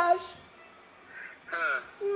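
A man's drawn-out, sing-song voice slides down in pitch to end a phrase. After about a second of quiet comes a short, wavering vocal glide that sounds somewhat like a caw.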